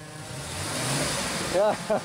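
A stuck pickup truck's engine being revved, with a rushing noise that swells over about a second and then fades.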